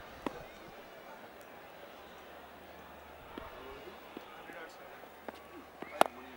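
Quiet cricket-ground ambience with faint distant voices and a few light knocks. A sharp knock right at the end is a bat striking the ball.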